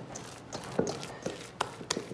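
A wet hand pressing into and lifting sticky 100% rye dough in a stainless steel mixing bowl: a few short, irregular soft squelches and clicks.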